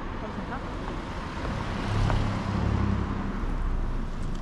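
A car passing close by on the street, its engine and tyres swelling up about halfway through and fading again, over steady street background.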